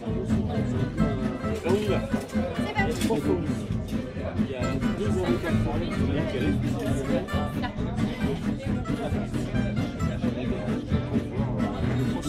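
Acoustic gypsy-jazz jam session playing with a steady rhythm, with diners' voices and chatter over it.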